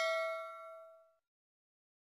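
Notification-bell 'ding' sound effect ringing out, a bright chime of several pitches that fades away within about a second, leaving silence.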